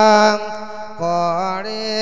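A Thai monk's solo male voice singing a thet lae sung sermon in Isan style through a microphone. A long held, wavering note ends about a third of a second in. After a short breath, a new phrase starts about a second in, gliding upward and then holding.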